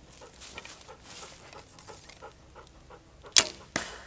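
Arrow shot from a green hazelnut self-bow: two sharp snaps near the end, about a third of a second apart, the first the louder.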